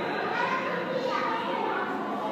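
Children's voices, talking and playing in the background with other voices mixed in, none of it close or distinct.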